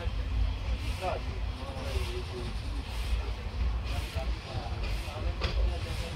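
Kanchanjunga Express passenger coach rolling slowly through a station, heard from aboard: a steady low rumble with a soft wheel clack about once a second. Faint voices sit underneath.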